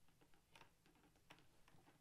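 Near silence, with a few faint small clicks of plastic as hands work the visor of an LS2 Valiant 2 modular helmet into place.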